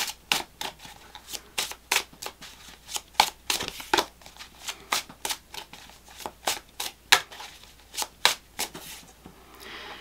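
Tarot cards shuffled by hand: quick, irregular flicks and slaps of cards, about three a second, stopping shortly before the end.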